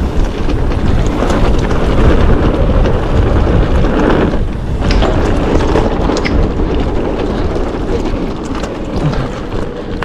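Wind buffeting the camera microphone and tyres rumbling over a dirt trail as a mountain bike is ridden downhill, with rattling clicks from the bike over rough ground. The noise briefly eases about four and a half seconds in.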